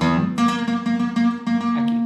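Acoustic guitar playing a scale as single picked notes, about three a second, the last note left ringing near the end.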